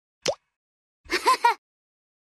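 Cartoon intro sound effects. First comes a quick rising pop, then about a second in a short, high, squeaky chirp of three quick notes.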